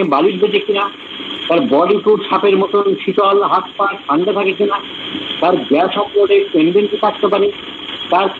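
Speech only: a lecturer talking on without a break.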